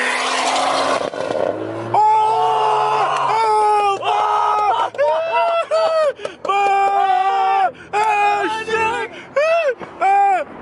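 A car engine revving hard with a loud rushing exhaust that drops away about a second in. It is followed by a voice in a string of long, drawn-out wordless calls over the car's low steady drone.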